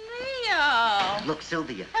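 A high voice giving one long drawn-out cry that slides up and then falls steadily in pitch over about a second, followed by a few quick spoken syllables.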